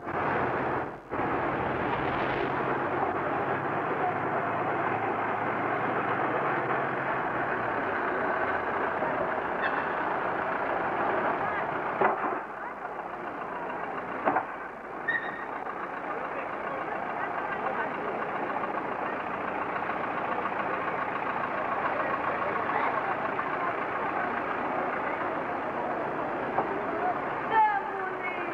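Small diesel locomotive of a narrow-gauge beach train running steadily, with indistinct voices behind it and a couple of sharp clicks around the middle.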